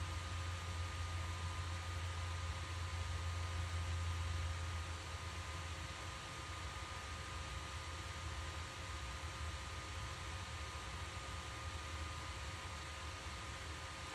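A small 12-volt fan cooling a resistor discharge bank's heatsink, running steadily with a low hum and a hiss. It gets a little quieter after about five seconds.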